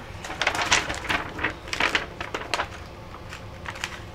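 Clear plastic carrier sheet of a cut iron-on vinyl design crinkling and crackling as it is handled and laid onto a fabric garden flag. It is a quick run of irregular crackles that thins out to a few clicks near the end.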